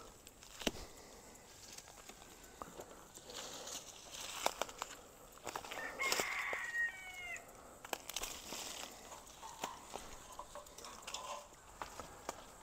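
Faint chicken calls, the clearest about six seconds in with a falling pitch, over scattered sharp snaps and rustles of weeds being broken off by hand.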